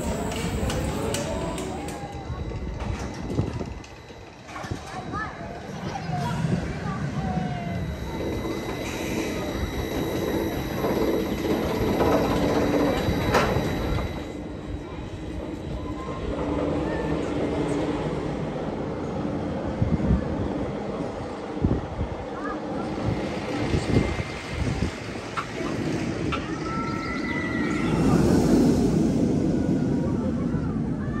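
Vekoma steel roller coaster train running along its track, a continuous rumble, with people's voices mixed in.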